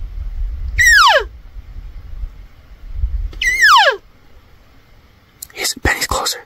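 Two cow-elk mews about two and a half seconds apart, each a high squeal that slides quickly down to a low note in about half a second, with a low rumble of wind on the microphone underneath.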